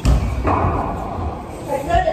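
Bodies thudding onto a wrestling ring mat: one heavy thud right at the start and another near the end. A person's voice sounds between them.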